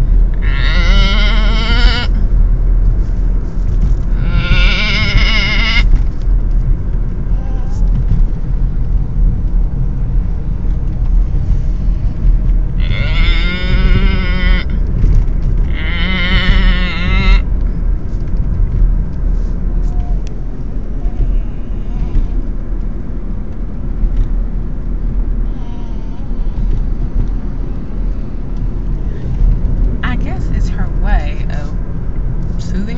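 Baby girl making wavering, bleat-like cries like a sheep, four drawn-out sounds of about a second and a half each, two near the start and two around the middle, as she drifts toward sleep. Steady car road noise runs underneath inside the cabin.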